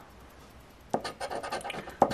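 A coin-style scratcher scraping the coating off a scratch-off lottery ticket: a sharp tap about a second in, then quick short scratching strokes.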